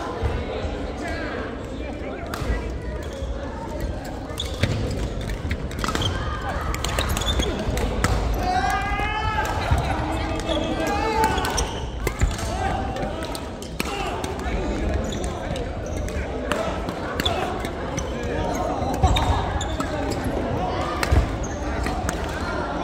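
Badminton rally sounds in a large gym: sharp racket-on-shuttlecock hits and thuds of players' feet on the wooden court, scattered irregularly, with chatter and calls from players echoing in the hall.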